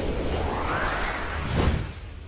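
Whooshing sound effects of a news logo intro: a noisy swoosh with a tone sweeping upward in pitch over the first second, then a second whoosh about a second and a half in.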